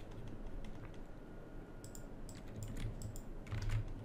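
Typing on a computer keyboard: a run of quick key clicks starting about two seconds in.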